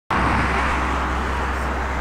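Steady road-traffic noise, an even hiss of tyres on a nearby road over a constant low rumble.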